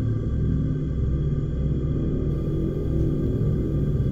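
Dark, low ambient horror music: a steady, sustained drone.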